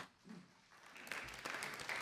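Sound drops briefly to near silence, then faint audience applause, a patter of many hands clapping, comes in about a second in.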